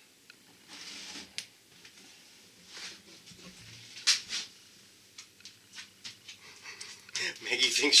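Dog panting and sniffing: short, irregular breathy puffs with a few light clicks in between.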